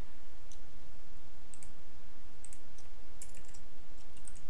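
A few faint, scattered computer keyboard clicks over a steady low hum, several close together a little after three seconds in.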